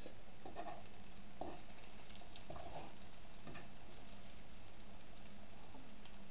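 A fork stirring eggs in a nonstick frying pan, with a few faint, irregular scrapes and taps over a steady low hiss.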